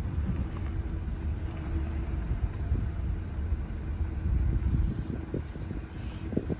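Vehicle cabin noise while driving slowly: a steady low rumble of engine and road with a faint steady hum above it.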